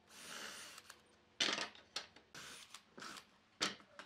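Cordless drill running in two short bursts as it bores into thin wooden strips, with two sharp wooden clacks between them as strips knock against the workbench.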